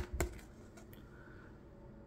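Two light clicks of a rigid plastic trading-card holder being handled, close together at the start, followed by quiet room tone.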